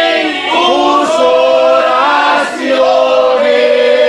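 A congregation singing a praise hymn together, unaccompanied, many voices in long sung phrases; the singing breaks briefly for a breath about two and a half seconds in.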